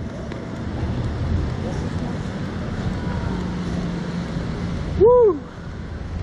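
Steady rushing air noise on the microphone of a Slingshot ride's onboard camera as the capsule swings, with a low rumble underneath. About five seconds in, the rider lets out one short, rising-and-falling vocal cry.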